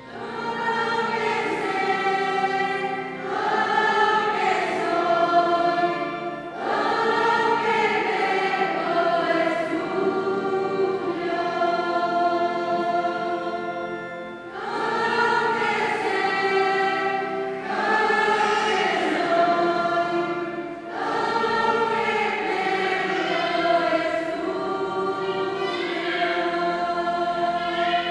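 A children's choir singing a hymn in phrases of about seven seconds, with short breaks for breath between them.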